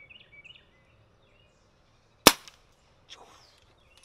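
A single shot from a Brocock Atomic XR .22 pre-charged pneumatic air pistol a little over two seconds in: one sharp crack. Birds chirp faintly just before it.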